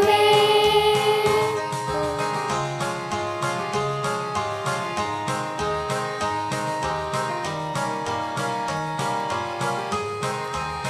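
Children's choir singing with music accompaniment: a long held note opens, then the song goes on over a steady rhythmic beat.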